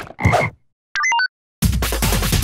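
Animated frog character croaking twice, low and rough, followed about a second in by a quick run of high electronic blips. Electronic dance music with a steady beat starts loudly near the end.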